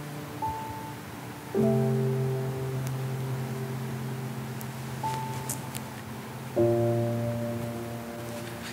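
Slow, soft piano music with no voice. A single high note is followed by a sustained low chord about a second and a half in, and the same pattern repeats about five seconds later.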